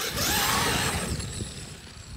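Traxxas X-Maxx RC monster truck on Monster Claws tires accelerating across snow: the electric motor's whine rises over the churn of the tires throwing snow. It is loudest in the first second, then fades as the truck pulls away.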